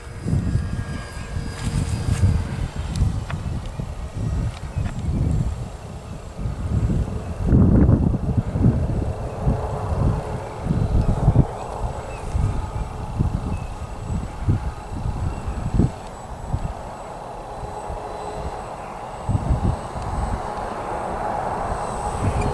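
Wind buffeting the microphone in uneven gusts, over the faint hum of a small electric RC airplane's motor and propeller flying at a distance. The hum grows slightly louder near the end.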